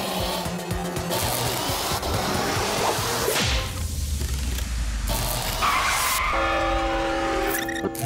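Cartoon sound effects of a character zooming past at high speed: a rushing whoosh over background music. About three seconds in comes a sound falling in pitch, then a low rumble, and held musical notes near the end.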